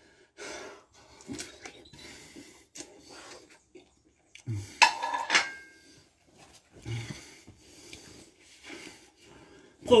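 A plate set down and clattering on a tile floor about five seconds in, with a short ring, amid short, heavy breaths between exercises.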